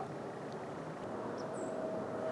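Faint steady outdoor background noise with no clear events, joined in the second half by a faint steady tone and two brief high chirps about a second and a half in.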